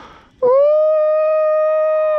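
A person's long, high-pitched excited cry, a drawn-out "åååh" held on one note, starting about half a second in after a breathy intake, while fighting a hooked fish.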